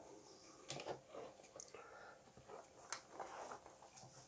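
Near silence: room tone with a few faint, soft handling rustles and one small click about three seconds in.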